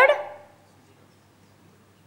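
A woman's voice draws out the last word of a phrase and fades away within the first half second, followed by a pause holding only a faint, steady low hum.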